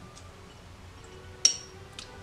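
A single short, sharp clink with a brief high ring about one and a half seconds in, as a paintbrush is picked up from among the tools beside the drawing board. Faint room hum lies under it.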